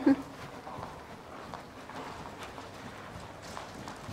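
Faint, soft hoofbeats of a horse trotting on sand arena footing.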